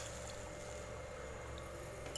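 Faint steady sizzling and simmering of masala gravy in a hot pan just after water was poured in, easing off slightly over the two seconds.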